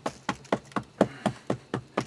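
A hand patting down a layer of clay-rich topsoil in a barrel filter: a steady run of pats, about four a second.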